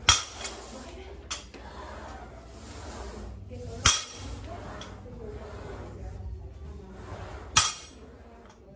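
A 135 lb barbell loaded with one iron plate per side clanking down on the gym floor three times, about four seconds apart, as warm-up deadlift reps are lowered; each landing is a sharp metallic clank with a brief ring.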